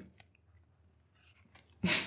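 A quiet pause, then near the end a sudden loud, breathy burst of laughter from a woman.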